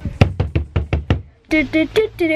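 A makeshift drumroll: a quick run of sharp knocks, about seven a second, lasting a little over a second.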